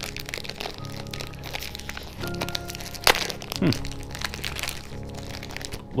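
A candy bar's wrapper crinkles and crackles as it is torn open by hand, with a sharp crack about three seconds in, over soft background music with sustained tones.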